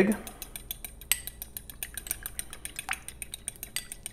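A fork beating a raw egg in a small glass dish: a fast, even run of tines clicking against the glass.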